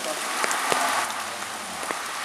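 Steady hiss of rain falling, with scattered sharp clicks of drops.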